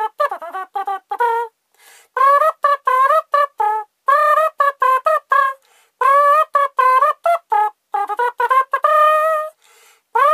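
A tune tooted by mouth in a brassy, trumpet-like tone: short staccato notes in phrases with brief pauses between them, some notes scooping up in pitch, and a longer held note near the end.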